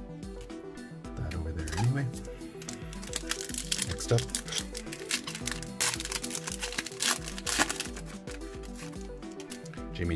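Foil trading-card pack wrapper crinkling and tearing as it is opened, in a run of crackles from about three to eight seconds in, over background music.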